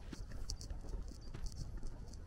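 Walking footsteps on a gritty paved road: short, crisp scuffs and crunches a few times a second, over a low rumble of wind on the microphone.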